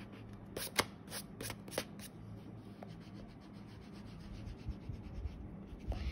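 Eraser rubbing back and forth over drawing paper, erasing pencil guidelines. A few sharper scrubbing strokes come in the first two seconds, then a fainter steady rubbing.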